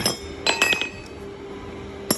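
Welder's chipping hammer striking a freshly welded steel plate to knock off slag: one sharp strike at the start, then a quick run of about four ringing metal-on-metal knocks about half a second in. A faint steady hum runs underneath.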